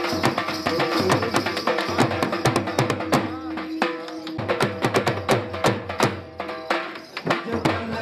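Punjabi dhol drum beaten in a fast, driving dance rhythm, with a sustained melody running over the beats. The drumming thins out briefly about seven seconds in.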